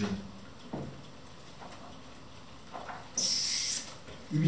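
Sheets of paper rustling as they are lifted and turned over, in one loud, crisp rush about three seconds in, after a short low hum of a man's voice near the start.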